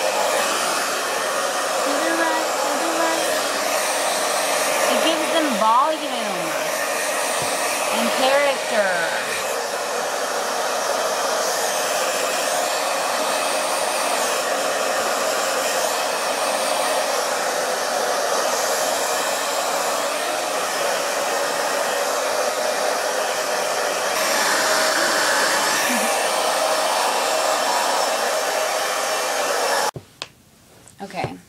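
Keratin Complex heat therapy hair dryer blowing steadily. Its pitch wavers in a few brief sweeps as it is moved about between roughly five and nine seconds in, and it cuts off suddenly at the end.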